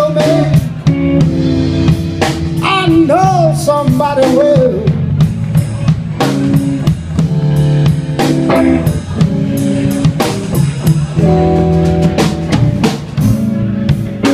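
Live electric blues band playing an instrumental break: an electric guitar lead with bent, gliding notes a few seconds in, over a drum kit keeping a steady beat.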